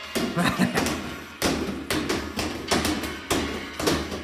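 Two play balls thrown against a wall and caught over and over by two people at once, giving an irregular run of sharp thuds, several a second, as their rhythms overlap.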